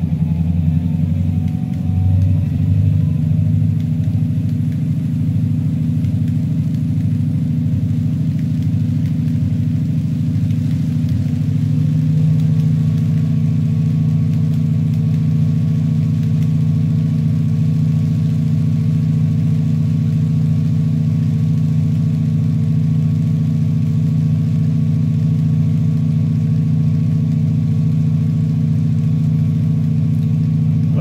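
Simulated diesel locomotive engine sound from a SoundTraxx SurroundTraxx system, played through computer speakers with a subwoofer, running steadily. Its note changes about twelve seconds in and then holds steady.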